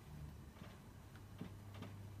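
Marker pen writing on a whiteboard: a few faint short ticks as the strokes are made, over a steady low hum.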